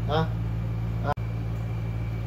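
Steady low mechanical hum of salon machinery, with a short high-pitched call right at the start and a momentary dropout just past a second in.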